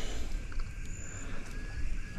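Quiet outdoor background with a steady low rumble and faint handling noise as raw chicken thigh is worked onto a circle hook by hand. A brief faint high chirp comes about a second in.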